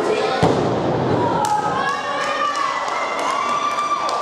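One heavy thud of a wrestler's body hitting the wrestling ring's mat about half a second in, with a short boom from the ring. Crowd voices and shouts carry on around it.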